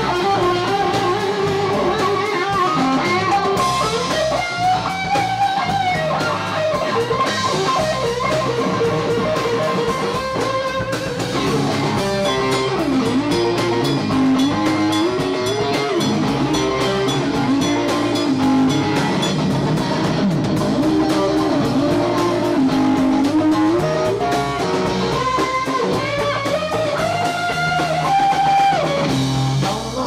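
Live rock band playing an instrumental passage: an electric guitar lead line with bending notes over bass guitar and drums.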